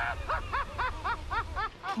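A man laughing in a quick run of short rising-and-falling 'ha' sounds, about four a second, over a low steady rumble.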